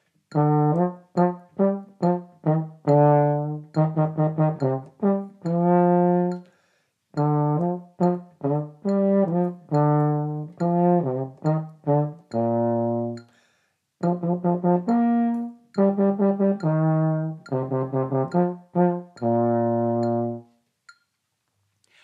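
Solo baritone horn playing a sixteenth-note practice exercise: runs of quick short notes alternating with longer held notes, in phrases with short breaks about seven and fourteen seconds in.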